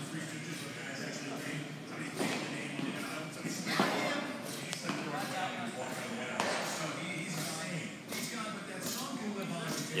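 Indistinct voices of people talking across a large echoing indoor hall, with a few sharp knocks and thuds from balls and equipment.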